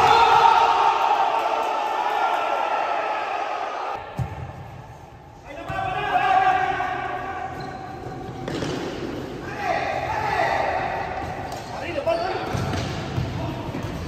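Indoor futsal game in a large echoing hall: players' voices shouting over the thuds of the ball being kicked and bouncing on the court. The sound breaks off abruptly about four seconds in, at an edit, then the play noise resumes.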